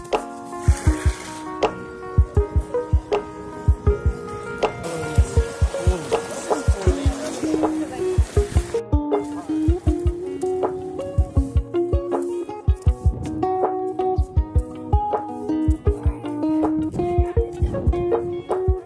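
Background music with a steady beat of low drum thumps under held notes; a hissing swell builds in the middle and cuts off sharply about nine seconds in.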